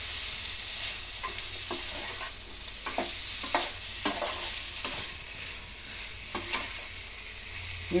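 Chopped tomatoes and onions sizzling in oil in a nonstick pan with a steady soft hiss, while a spatula stirs them and knocks and scrapes against the pan at irregular moments.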